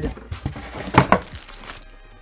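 Cardboard packaging being lifted out and set aside, with light handling rustle and a quick pair of knocks about a second in as it is put down.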